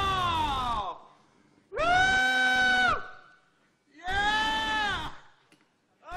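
A man's voice crying out in three long, drawn-out wails, choked with emotion as he weeps in awe. The first cry slides down in pitch and the second is held level.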